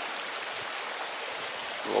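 Creek water running steadily: an even rushing hiss.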